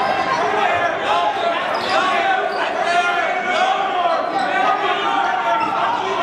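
A basketball being dribbled on a hardwood gym floor, amid steady crowd voices echoing in a large gym.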